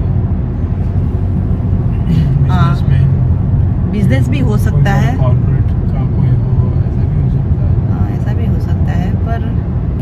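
Steady road and engine rumble inside a moving car's cabin, with short stretches of speech about two and four seconds in.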